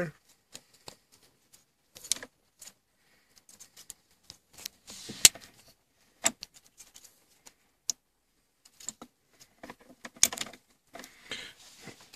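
Irregular small plastic clicks and snaps as a plastic pry tool works the latches of a car wiring connector free from its USB adapter housing, with the sharpest snap about five seconds in.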